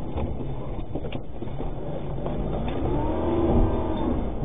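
Armored cash-in-transit vehicle driven hard, heard from inside the cab: steady engine and road rumble, a few sharp knocks in the first second or so, and from about three seconds in an engine whine that climbs and holds as it revs.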